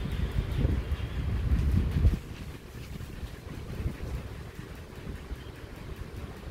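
Low wind rumble on the microphone, heavy for about the first two seconds, then dropping suddenly to a softer rumble.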